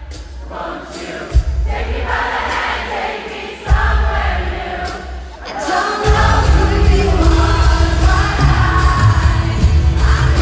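Live pop-rock band with a female lead singer and the audience singing along, heard through a phone microphone in the arena. The first few seconds are sparser, with occasional heavy drum hits. About six seconds in, the full band with bass and drums comes in and the singer leads on the microphone.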